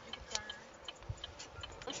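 Car turn-signal indicator ticking faintly and steadily, a few clicks a second, inside the car cabin while it waits to turn.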